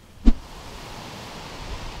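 A single sharp thump about a quarter second in, followed by a steady outdoor hiss that swells slightly toward the end.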